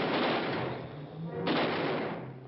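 Two pistol shots on an old TV soundtrack, about a second and a half apart, each trailing off in a long echo.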